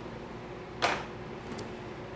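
A single short clatter of kitchen utensils, from a silicone bowl and spatula being handled over a steel mixing bowl, a little under a second in, over a faint steady room hum.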